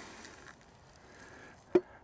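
Faint rustle of birdseed pouring from a plastic scoop into a post bird feeder, with one short knock near the end.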